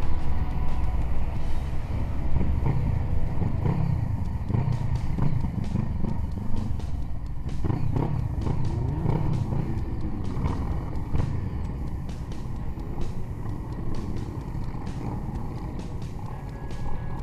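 Motorcycle engines running on a group ride, heard from a moving bike: a steady low rumble with the engine pitch rising and falling a few times in the middle as the revs change.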